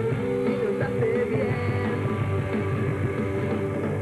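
Rock band playing live, with guitar to the fore over a steady bass and drum backing, heard from among the audience.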